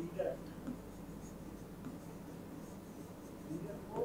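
Stylus writing on an interactive whiteboard screen: faint, scattered taps and scratches of the pen tip on the glass.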